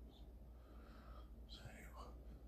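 Near silence: room tone with a low hum and a faint, breathy whisper from the man in the middle of the pause.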